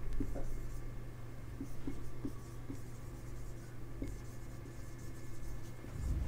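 Marker pen writing on a whiteboard: a run of short, faint strokes as words are written out by hand.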